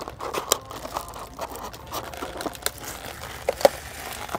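Irregular crinkling and sharp clicks from plastic being handled, with a plastic cup of iced milk coffee among it.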